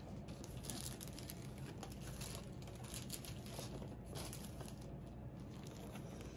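Faint, irregular crinkling and rustling of a diamond-painting kit's packaging being handled, over a low steady room hum.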